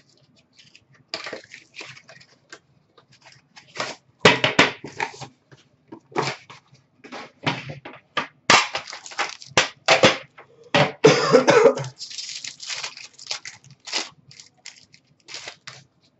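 Foil trading-card pack wrapper crinkling and tearing as the pack is opened and the cards are pulled out: a run of irregular crackling rustles, loudest in the middle.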